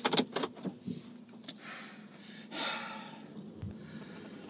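A person breathing in a quiet car cabin: a few small clicks of movement, then a short breath and a longer audible exhale about two and a half seconds in.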